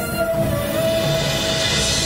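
Dramatic TV-serial background score: sustained droning tones with a hissing whoosh that swells up over the second second.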